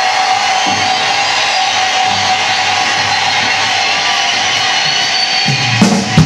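Live rock concert recording: the crowd cheers over a held electric-guitar intro. The drum kit comes in with loud hits just before the end.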